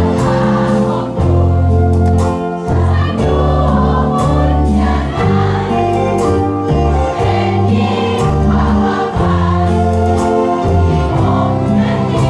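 Live band playing a pop ballad while a crowd of many voices sings the melody together, not one lead singer.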